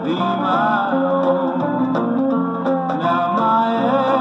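A country song played from a 7-inch vinyl record spinning on a turntable: steady recorded music with little treble.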